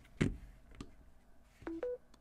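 A couple of light plastic knocks as a folded Galaxy Z Flip 4 in a hard ring case is set down on a wireless charging pad. Near the end comes a short two-note electronic beep, the second note higher, signalling that wireless charging has started.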